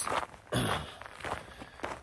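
Footsteps of a man walking, a few steps at an unhurried pace.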